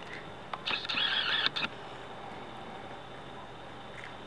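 A bite into a crispy panko-breaded fried ham and cheese roll: one short crunch lasting about a second, starting just under a second in, with a few sharp cracks at its edges.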